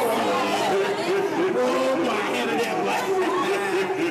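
Many people talking and calling out over one another in a busy group, with no instruments playing.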